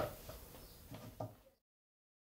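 Faint room tone with one small click about a second in, then dead silence where the audio cuts out at a video transition.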